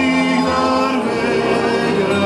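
Men's folk ensemble singing a Croatian folk song in several-part harmony, holding long notes and moving to a new chord about a second in, with acoustic string accompaniment beneath.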